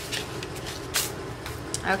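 Paper envelope being opened and a card slid out: a few short paper rustles, the loudest about a second in.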